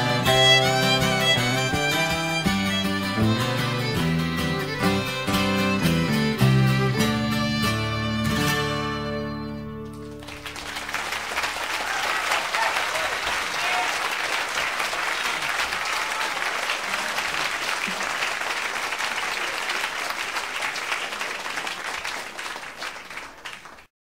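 Instrumental ending of a folk song on fiddle and guitar, dying away about ten seconds in. Then an audience applauding, fading out near the end.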